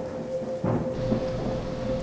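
Background soundscape of rain with low rumbling like distant thunder, under a single steady tone from the binaural-frequency track.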